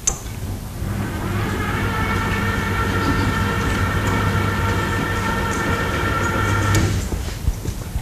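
Electric drive motor of a motorized lecture-hall chalkboard running as the board panels slide: a steady, even hum that starts about a second in and stops abruptly about a second before the end, after a short click at the start.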